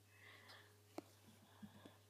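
Near silence: room tone with a faint steady hum, a faint breathy sound near the start, a single faint click about a second in and a few small ticks near the end.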